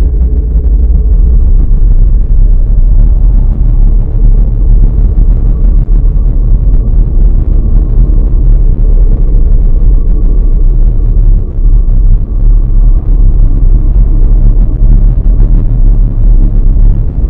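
Dark ambient drone track: a loud, dense, steady low rumble, with faint held tones in the middle.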